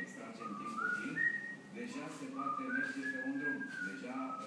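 African grey parrot whistling a short tune: two rising phrases, each stepping up through two or three clear notes, the second ending on a long held note.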